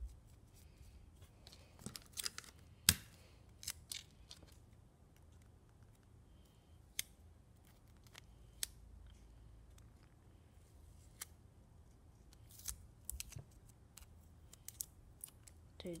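Folded coloured paper and clear tape being handled and pressed down by fingers: scattered sharp crackles and clicks, with one loudest snap about three seconds in.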